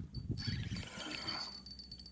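Daiwa spinning reel being wound in, the handle cranked with soft mechanical whirring and light irregular ticking, as a hooked bass is reeled toward the boat.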